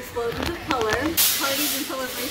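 A woman talking, with a sharp hiss of noise lasting under a second, starting a little past halfway.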